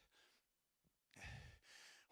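Near silence, broken about a second in by one short breath from a man into a handheld microphone.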